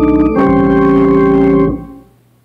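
Church organ playing sustained chords: a brief chord that changes about half a second in to a second chord, held for about a second and then released. It is the five chord of a D major gospel preacher-chord progression, voiced over a B in the bass.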